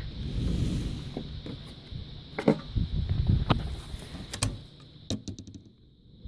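Sharp clicks and knocks about a second apart, then a quick run of small clicks near the end, from handling a minivan's sliding door and the water-tank compartment panel.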